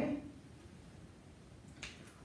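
Quiet room tone after a man's word ends at the start, with one brief, faint click near the end.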